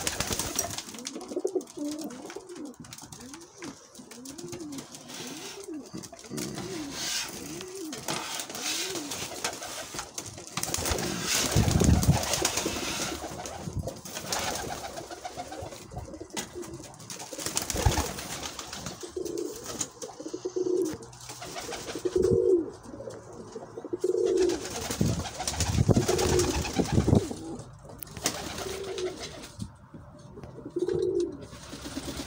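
Domestic pigeons cooing, first in a quick run of short rising-and-falling coos and later in slower, separate coos. Louder bursts of rustling and knocking break in around the middle and again near the end.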